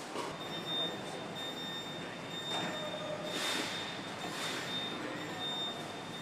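Car assembly plant ambience: machinery noise with a steady high-pitched whine, and two short hisses a little past the middle.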